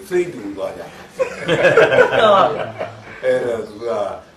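An elderly Buddhist monk talking, breaking into loud laughter for about a second and a half a little over a second in.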